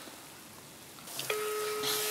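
Telephone ringback tone through a mobile phone's loudspeaker: one steady beep lasting about a second, starting just past the middle, the sign that the called line is ringing and not yet answered.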